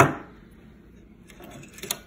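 A single sharp knock as the homemade steel shotgun pistol is set down on a wooden table, dying away quickly, followed by a few faint handling clicks near the end.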